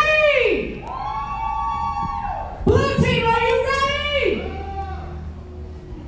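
A voice calling out in three long, drawn-out sounds, each held at a level pitch for about a second and a half and falling away at the end; it fades to a low hum about four and a half seconds in.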